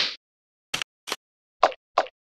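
Four short cartoon sound effects, each a brief blip, spaced about half a second apart. The tail of a sharp hit fades away at the very start.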